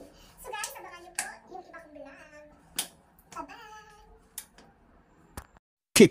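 A woman talking quietly, with a few sharp clicks, then a sudden cut to silence near the end.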